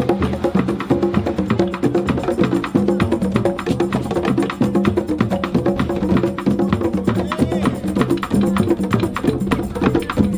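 Drum circle of hand drums, congas and djembes, playing a fast, dense rhythm together, with stick-struck metal drums in the mix.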